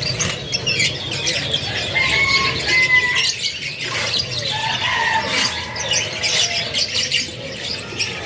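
Many caged canaries chirping and twittering at once, with a few short whistled notes and brief wing flutters.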